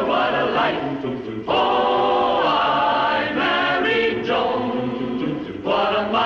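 Closing theme song of the 1950s sitcom sung by a choir, the voices holding long phrases over a steady, evenly pulsing bass line in the accompaniment.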